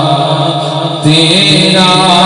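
A man singing a naat, an Urdu devotional poem, into a microphone, holding long drawn-out notes and moving to a new, higher note about a second in.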